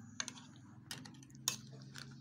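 A metal ladle clicking lightly against the side of a stainless-steel pot as it stirs a thick coconut-milk stew: three short clinks, over a faint low hum.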